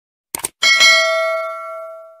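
A quick click sound effect, then a notification-bell ding from a subscribe-button animation, ringing with bright overtones and fading out over about a second and a half.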